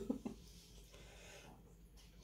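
Faint room tone, with the tail of a spoken word at the very start.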